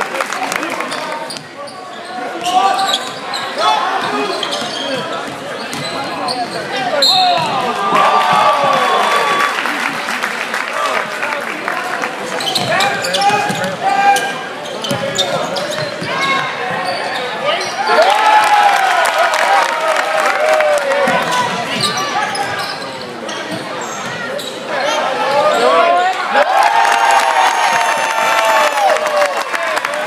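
Live gym sound of a basketball game: a ball dribbling on the hardwood court, sneakers squeaking, and players and spectators calling out in a large hall.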